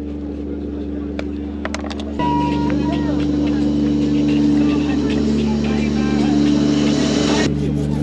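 Steady low hum of a passenger ferry's engine, heard on deck, with passengers' voices in the background; the hum jumps louder about two seconds in and changes again near the end.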